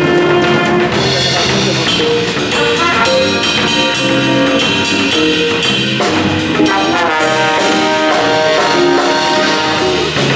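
Jazz big band playing live: trumpets, trombones and saxophones in loud full-ensemble figures over a drum kit.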